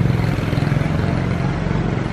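A motor engine running steadily at idle, a low even hum with no revving.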